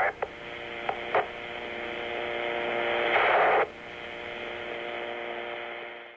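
Police radio channel left open after a transmission: a steady hum with a few clicks in the first second or so, then a short burst of static about three seconds in, fading out near the end.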